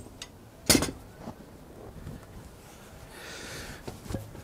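Handling noise from a heavy crossbow and its windlass gear: a single sharp knock about three quarters of a second in, then a soft scraping rustle a little after three seconds.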